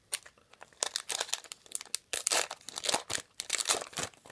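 Foil booster pack wrapper of Pokémon trading cards crinkling as it is handled, a dense run of sharp crackles starting about a second in.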